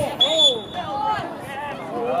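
Referee's whistle: one short blast on a single high, steady note about a quarter second in, stopping play. Voices are shouting across the field.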